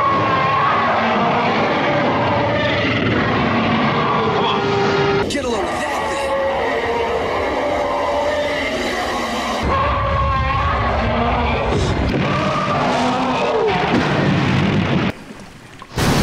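A stock movie monster roar, the one taken from an old Lost World dinosaur film and reused as King Kong's roar, played over several film clips with music. About ten seconds in a heavy low rumble comes in, and the sound drops away about a second before the end.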